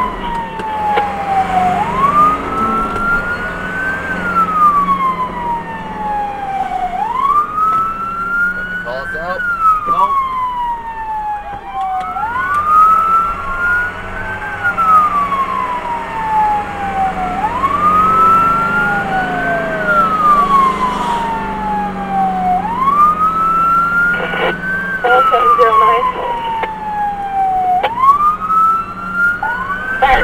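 Fire-rescue vehicle's siren on wail, heard from inside the vehicle: each cycle rises quickly then falls slowly, a few seconds long. Steady engine and road noise runs underneath.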